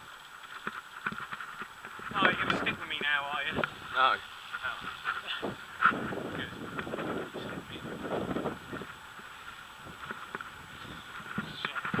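Indistinct voices calling out over wind and rolling noise from a moving road bicycle.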